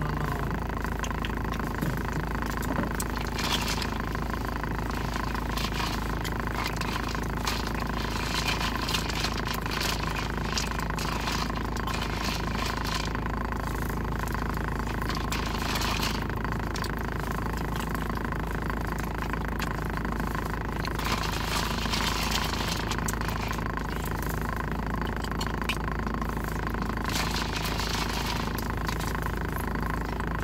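Steady hum of a car idling, heard from inside the cabin, with chewing and mouth noises coming and going over it.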